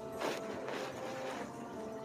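Domestic cat purring close to the microphone while being stroked, a low rattling purr under soft background music.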